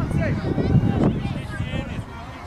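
Several voices calling and shouting, some of them high-pitched, over a low rumble of wind on the microphone.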